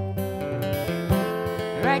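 Acoustic guitar played between sung lines of a song, ringing chords with new notes struck through the passage; a singing voice comes back in at the very end.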